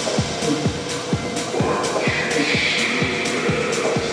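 Techno played over a club sound system: a kick drum about twice a second with hi-hats and a held synth note, and a hissing synth wash that enters about halfway through.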